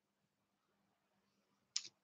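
Near silence: room tone, with one light click near the end as paper scraps are handled.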